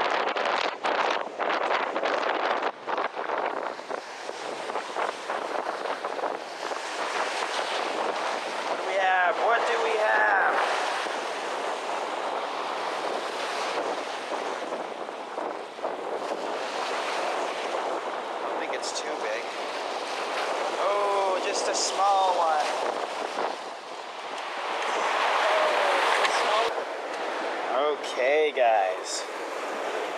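Strong wind buffeting the microphone over waves breaking on a rocky lakeshore, a loud, continuous rushing with gusts rising and falling.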